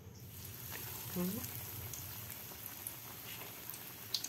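Hot oil in a wok sizzling and bubbling as a battered, breadcrumb-coated sausage bread roll is deep-fried. The sizzle starts suddenly as the roll goes into the oil and carries on steadily.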